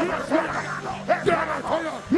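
A man's voice into a microphone, uttering short, clipped shouted syllables about three a second, over steady background music with held low notes.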